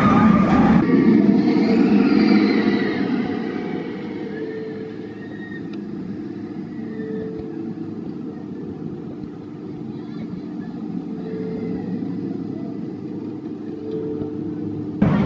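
Steel roller coaster train rumbling along its track, louder in the first few seconds and then settling to a lower, steady rumble, with riders' voices at the very start.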